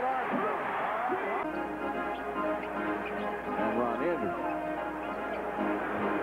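Arena crowd noise from a basketball game, with voices calling out. About a second and a half in, music with several held notes comes in and carries on over the crowd.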